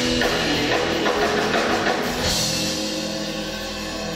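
Live rock band playing, with drum kit and electric guitars. About two seconds in there is a cymbal crash, then a held chord as the loudness eases slightly toward the end of the song.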